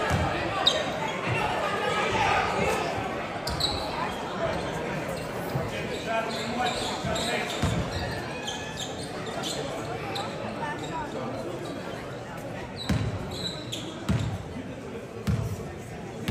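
Voices and chatter echoing in a gymnasium, with a basketball bouncing on the hardwood court a few times in the second half.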